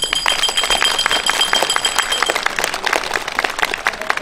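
Crowd applauding, a dense uneven patter of claps, with a thin steady high whine over it that stops a little past halfway.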